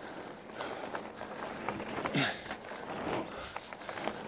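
Mountain bike rolling down a dirt and gravel trail: steady tyre noise with many small clicks and rattles from stones and the bike. A brief faint voice comes about two seconds in.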